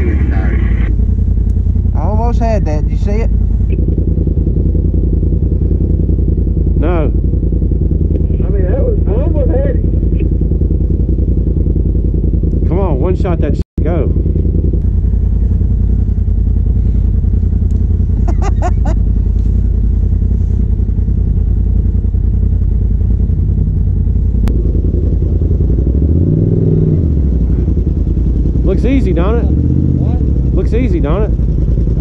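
Polaris RZR side-by-side's engine running steadily at low revs, heard from inside the open cab as it crawls over rocks, with one brief rise and fall in engine pitch near the end.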